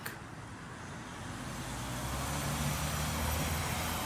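A motor vehicle driving past on the street, its engine and tyre noise growing louder to a peak about three seconds in, then fading.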